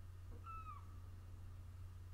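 One short animal call about half a second in, a single high note that dips at its end, over a faint steady low hum.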